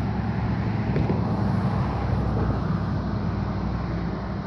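A steady low engine drone with an even rushing noise over it, as of a motor vehicle running close by.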